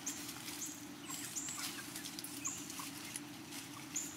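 A flock of chickens foraging in leafy undergrowth: light rustling and scratching in the vegetation, with several short, high, faint chirps scattered through.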